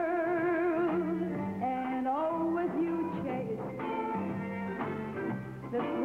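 A woman singing long held notes with a wide vibrato over a 1960s pop band with a stepping bass line; her line rises to a new note about two seconds in.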